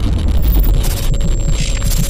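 Loud logo intro sound effect: a deep rumble with a hiss over it and a steady held tone underneath.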